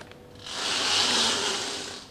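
Power wheelchair driving a short distance: a steady hiss that swells up about half a second in and fades away toward the end.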